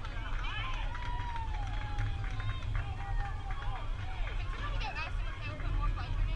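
Indistinct voices of players and spectators calling out across a softball field, with drawn-out, rising and falling calls, over a steady low rumble.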